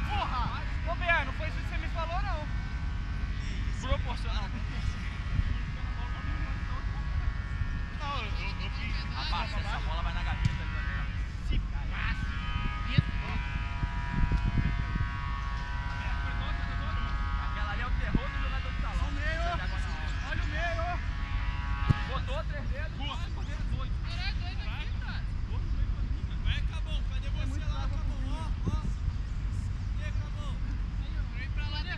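Distant shouts and calls from football players, over a steady low rumble of wind on the microphone. From about 8 to 22 seconds a steady drone of several pitches runs underneath, and a few sharp thuds stand out.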